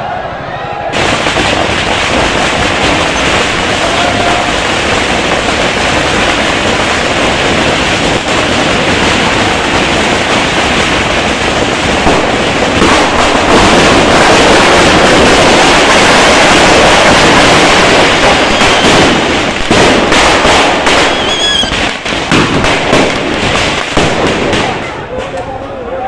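Firecrackers packed inside a burning Ravan effigy going off in a long, dense barrage of rapid bangs and crackling. It starts about a second in and is loudest in the middle. Near the end it thins into separate sharp cracks.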